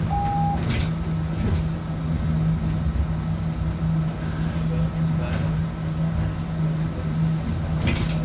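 Interior of a city bus on the move: a steady low drivetrain hum and road rumble, with scattered rattles and clicks from the cabin. A short beep sounds near the start.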